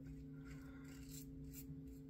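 Faint short scrapes of a Merkur 34C safety razor cutting through lathered stubble, heard a few times over a steady low hum.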